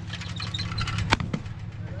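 A single sharp shotgun crack about a second in, fired at a thrown clay target, over a steady low engine hum.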